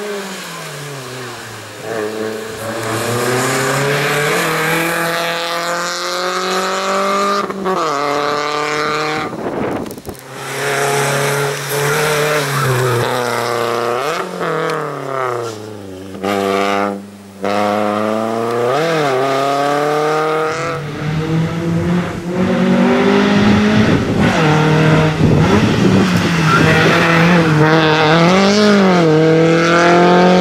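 Volkswagen Lupo slalom car's engine revving up and dropping off again and again as it accelerates and brakes between cone chicanes, with short lifts and climbs in pitch through the gears. It is loudest over the last third, as the car comes closest.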